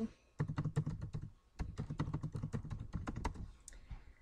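Typing on a computer keyboard: a quick run of keystrokes, a short pause about a second and a half in, then a second run that stops shortly before the end.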